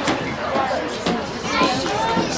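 Overlapping voices of young people chattering and calling out.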